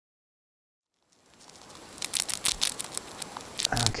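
Sound-effect recording of a mouse nibbling a cracker. After about a second of silence a faint hiss comes in, then quick, irregular nibbling clicks from about two seconds in.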